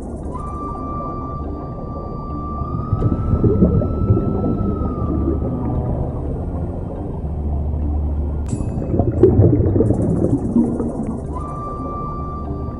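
Scuba breathing heard underwater: a steady low rumble with two louder spells of rumbling, gurgling exhaled bubbles, about 3 s in and again about 9 s in. A thin, steady high whine runs through the first half and comes back near the end.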